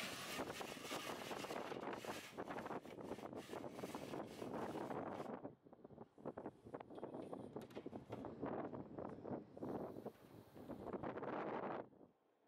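Faint wind buffeting the microphone, gusting and flickering, heaviest in the first five seconds, then patchier until it drops away just before the end.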